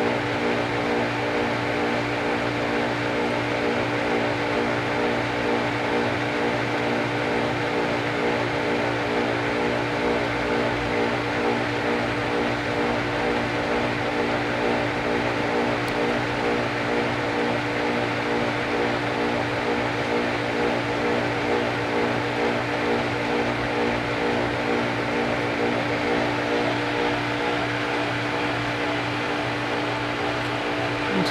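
Swimming-pool pump motor running with a steady electrical hum and a set of even, unchanging tones over a background whirr; the owner remarks that the pump sounds funny.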